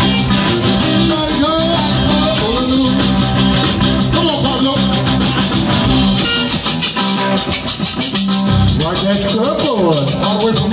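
A live zydeco band playing an up-tempo number: accordion, rubboard scraped in a steady fast rhythm, electric guitars, bass and drum kit.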